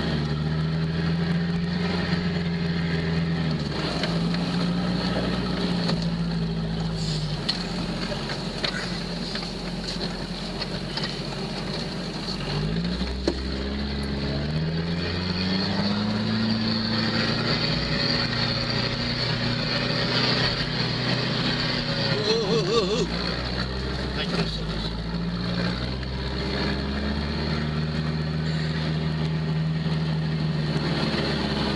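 Off-road vehicle's engine running under load as it drives along a rough dirt track; the engine note climbs twice near the middle and drops back a little later.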